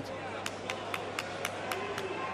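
A rapid run of seven sharp claps or knocks, evenly spaced at about four a second, over the steady hubbub of an arena crowd.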